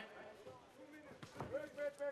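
Faint voices shouting around a kickboxing ring, with a few dull thuds from the fighters in the ring.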